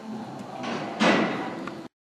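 A sudden loud clatter about a second in, trailing off, before the sound cuts off abruptly.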